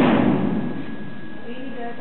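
A single sudden loud thud at the very start, dying away over about half a second in the echo of a large hall.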